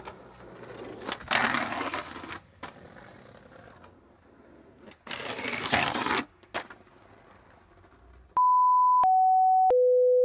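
Skateboard wheels rolling on concrete and a grind along a concrete ledge, heard as two rough scraping passages. About eight seconds in, loud steady electronic beeps take over, three tones of about two-thirds of a second each, each lower than the last.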